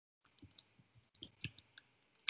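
Faint keystrokes on a computer keyboard: a run of about ten soft clicks, starting a moment in.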